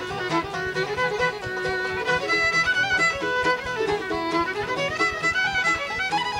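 Live bluegrass band playing an instrumental break, the fiddle carrying the melody over a steady rhythm from mandolin, upright bass, banjo and guitar.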